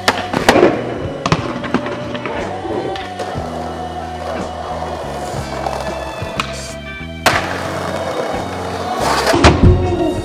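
Skateboard slam on stone paving: the rider and board hit the ground hard at the start and the board clatters away. Later, wheels roll on paving, there is a sharp crack about seven seconds in, and a heavy landing with loud impacts comes near the end. Music with a steady beat plays throughout.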